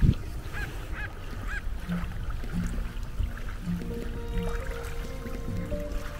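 Seabirds calling over the water: three short calls, each rising and falling, in quick succession in the first couple of seconds, then a few lower calls, over a low steady rumble.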